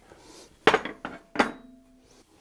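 Two clinks of forged steel blacksmith's tools (a top fuller and a bottom tool) being set down on a steel bench, about three-quarters of a second apart. The second clink rings briefly.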